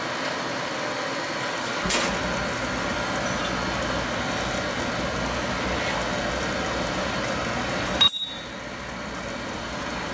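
Beckett AFG oil burner running steadily with its blower and fuel pump turning while the pump is bled of air. A click comes about two seconds in, and a short, loud metallic clink with a bell-like ring comes about eight seconds in.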